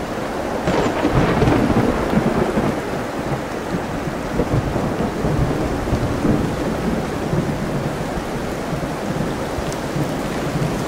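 Steady rain and ocean surf, with a low rumble that swells about a second in and dies away over several seconds.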